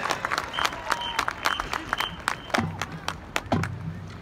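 Scattered hand clapping from a crowd in stadium stands, many separate claps.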